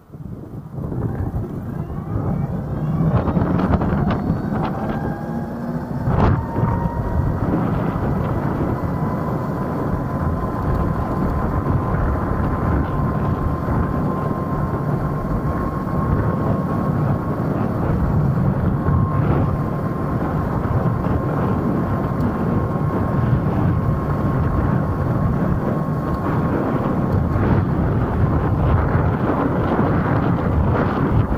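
TIER e-scooter's electric motor whining, rising in pitch as it pulls away from a standstill over the first few seconds, then holding a steady whine at cruising speed. Loud wind rush on the microphone and road noise run under it, with a sharp click about six seconds in.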